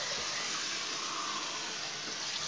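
Steady rush of water running from a bathroom sink tap.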